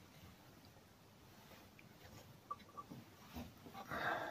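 Near silence, with a few faint metallic clicks and ticks in the second half from the valve spring compressor being worked on the motorcycle cylinder head.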